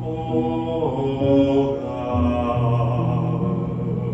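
A man singing a slow worship chorus into a microphone, holding and gliding between notes, over long held low accompaniment notes.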